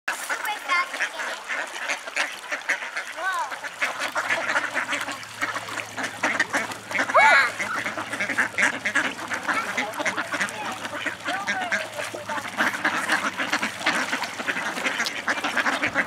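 A large flock of mallard ducks quacking and calling in a busy, continuous chatter of short calls.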